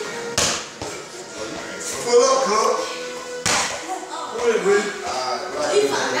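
Indistinct voices with music under them, broken by two sharp knocks, about half a second in and about three and a half seconds in.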